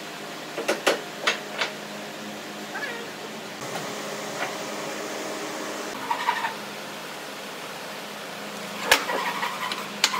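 Sharp knocks of wooden workpieces being handled and set against each other: a quick run of them about a second in and a loud one near the end. Between them come a few short squeaks, over a steady low hum.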